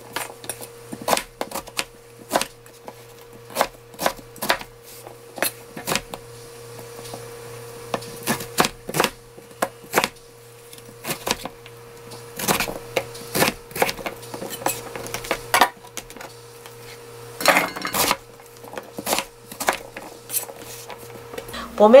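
Kitchen knife chopping Korean winter radish into small cubes on a plastic cutting board: irregular sharp knocks of the blade hitting the board, about one or two a second, over a faint steady hum.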